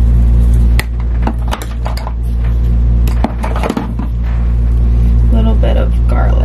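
A steady low hum with a few short sharp clicks and taps as spice shakers are shaken and handled over pizzas on a metal pan.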